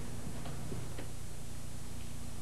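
Steady low hum and hiss, with a few faint ticks near the middle.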